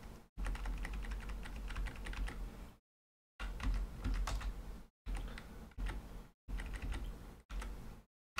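Computer keyboard keys being tapped over and over, a run of quick clicks, broken by several short spells of dead silence.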